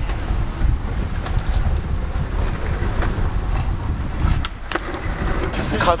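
Wind buffeting the microphone, a steady low rumble, with a few faint ticks and scrapes of hands working griptape onto a new skateboard deck.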